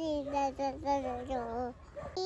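A toddler singing in a high voice: a string of drawn-out notes that dip and rise, breaking off shortly before the end.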